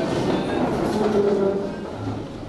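Classroom commotion: many students getting to their feet, wooden chairs and desks scraping and knocking, mixed with a jumble of voices.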